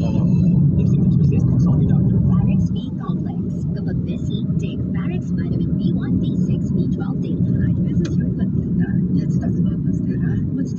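Car cabin road noise: steady low rumble of the engine and tyres while driving. The rumble is louder for the first few seconds and drops a little a bit under three seconds in.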